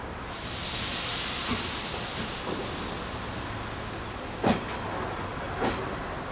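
A slow-moving passenger train: a long hiss from the train in the first couple of seconds, then two sharp clunks about a second apart as the coach wheels cross a rail joint, over a low rumble.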